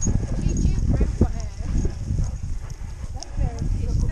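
Footsteps of someone walking on a soft, muddy grass track, heard as a run of dull thuds and knocks close to the microphone, with faint voices in the background.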